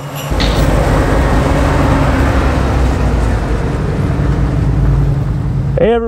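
Lifted Jeep CJ7's 5.3 LS V8 running steadily on the move, with heavy tyre and road noise from large off-road tyres on a dirt road. It starts suddenly just after the start and cuts off abruptly just before the end.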